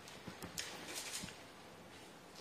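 A few faint, small knocks and a brief rustle in the first half of a quiet room pause.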